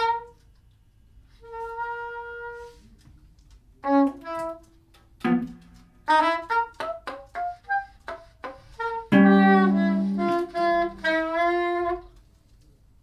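Live small-group music led by a soprano saxophone: a held note, then short, broken phrases with pauses between, and a longer, louder phrase near the end. Plucked guitar notes sound beneath.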